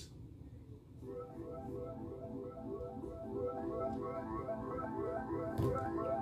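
Music playing, starting about a second in and slowly getting a little louder, with held notes over a steady low bed.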